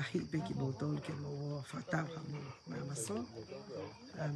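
A woman talking, with a steady high-pitched chirring of night insects in the background.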